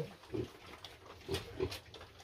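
Piglets grunting: a few short, separate grunts.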